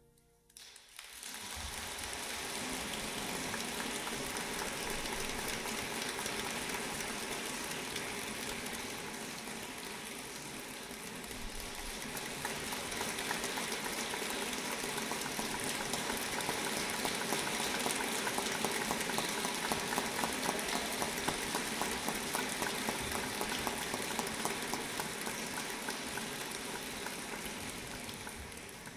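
Audience applause, starting about a second in as the music ends, swelling and then tapering off near the end.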